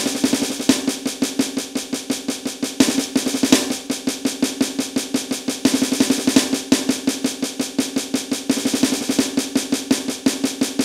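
Snare pad of an electronic drum kit played with sticks in alternating single strokes. Each bar opens with a fast burst of thirty-second notes on the first beat, then sixteenth notes for the other three beats, repeated as a steady drill.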